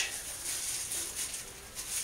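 Clear plastic packaging bag rustling and crinkling softly as a new pump shaft seal is handled and taken out of it.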